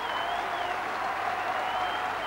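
Stadium crowd applauding and cheering on a runner, an even, steady wash of clapping and voices, with a steady tone running underneath.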